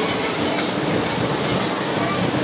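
A children's roundabout ride turning, its running noise blended into a steady, unbroken fairground din.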